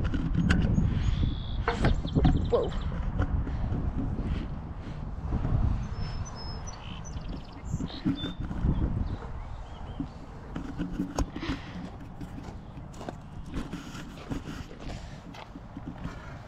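Wind buffeting the microphone as it moves through the air, a low rumble that is strongest in the first half and eases later, with scattered sharp clicks and knocks.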